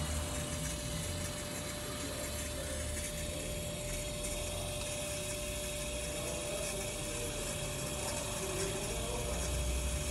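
Fuel injector test bench running a flow test at 3 bar: the bench pump runs steadily, with a faint steady tone, while a Keihin injector from a Honda CG 160 sprays test fluid into a graduated cylinder.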